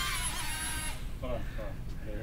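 Millennium Falcon toy quadcopter drone's small electric motors and propellers running with a steady high whine of several tones, cutting off suddenly about a second in.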